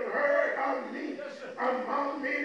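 A man's voice preaching loudly into a microphone in drawn-out phrases, with some vowels held.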